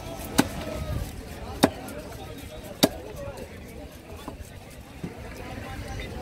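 A large knife chopping through a barracuda on a wooden log chopping block: three sharp chops about a second and a quarter apart in the first half, then only a couple of light knocks.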